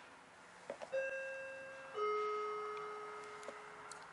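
Two-note ding-dong chime of a shop's public-address system: a higher note about a second in, then a lower note a second later, each ringing and fading slowly, after a faint click. It is the attention signal that comes before an announcement over the store microphone.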